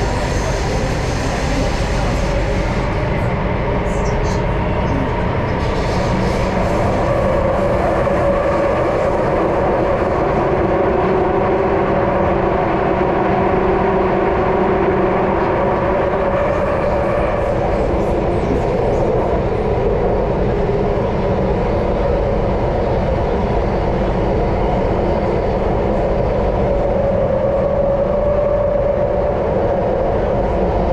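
Subway train running steadily through a tunnel, heard from inside the carriage: a continuous rumble of wheels and motors with a steady hum over it.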